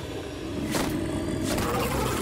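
A low, steady rumble of soundtrack effects with one sharp hit about three quarters of a second in.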